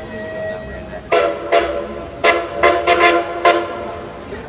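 Steam locomotive whistle blowing a rapid series of short blasts, about seven, starting about a second in: whistle signals exchanged between the engines.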